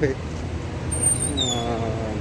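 Street traffic: a steady low rumble of passing vehicles, with a brief high falling squeal about a second in.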